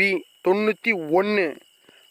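A person speaking Tamil, calling out a quiz answer letter ("B") in short spurts, over a faint, steady high-pitched tone.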